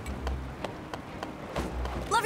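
Cartoon pony hoofbeats: a quick, even run of light clip-clop clicks, about five a second, with two short low rumbles, one near the start and one near the end.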